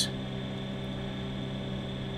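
Steady background hum of several low tones with a faint high-pitched whine and a light even hiss, the running noise of powered bench electronics.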